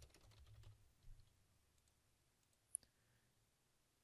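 Faint computer-keyboard typing, a quick run of keystrokes in the first second or so, then a single sharp mouse click a little past the middle.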